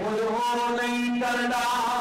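A man chanting a verse in a melodic voice, holding long notes and stepping from one pitch to the next every half second to a second.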